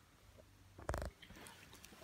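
A single short handling knock about a second in, over quiet room tone.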